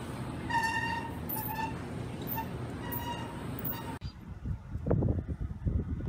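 A shopping cart rolling through a store, with a steady hum of noise and several short high-pitched squeaks. About four seconds in, this gives way to wind gusting on the microphone.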